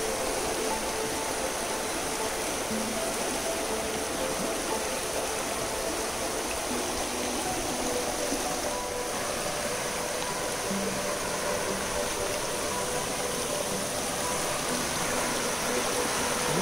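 Shallow creek water rushing steadily over rocks in small rapids.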